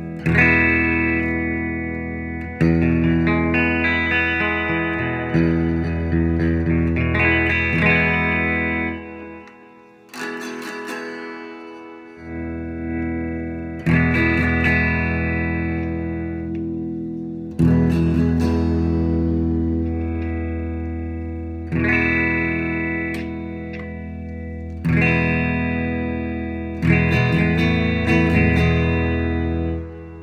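Ibanez 2370 hollowbody electric guitar played through a Fender Princeton Reverb amp: full chords strummed and left to ring, a new chord roughly every two to four seconds, each one slowly fading.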